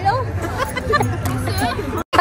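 Many voices chattering at once, with music playing underneath.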